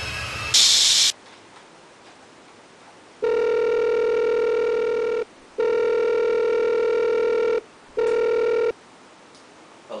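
A mobile phone ringing with a steady electronic ring: two rings of about two seconds each and a third that stops short as the call is answered. A short loud burst of hiss comes about half a second in, before the ringing.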